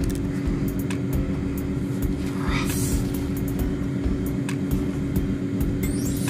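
A steady motor-like hum with a rumble underneath, holding two even tones, with a few faint clicks and a short hiss about two and a half seconds in.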